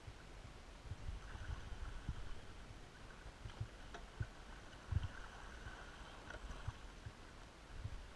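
Oars working the water as a rowing crew spins the boat: faint splashing and swishing around the hull, with scattered low knocks, the strongest about five seconds in.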